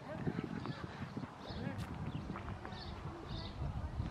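Faint voices over a steady run of irregular low thumps and knocks, with one sharp click about two seconds in.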